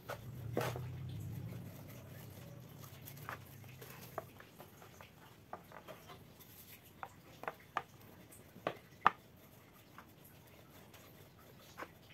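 Wooden rolling pin rolling over slices of bread on a plastic cutting board, a low rumble during the first few seconds. Scattered light taps and clicks follow as the bread and cheese slices are handled on the board, with a few sharper clicks between about seven and nine seconds in.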